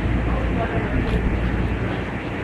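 Steady low rumble of background noise with a hum underneath, with no clear words.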